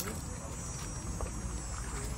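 Steady low rumble of wind on the microphone, with faint voices of people talking in the background.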